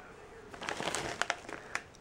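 Plastic bag of Tohato Caramel Corn crinkling as it is handled and turned over, a run of small irregular crackles starting about half a second in.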